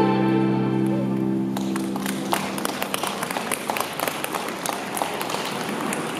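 The music's final held chord dies away over the first two seconds. Audience applause starts about one and a half seconds in and carries on to the end, with the clapping gradually thinning.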